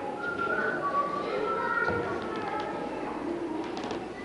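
Indistinct background chatter of several voices, with a few faint clicks near the end.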